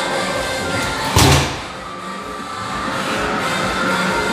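A mallet strikes the pad of an arcade hammer strength-test machine once, a single loud thud about a second in that dies away quickly, over steady background music.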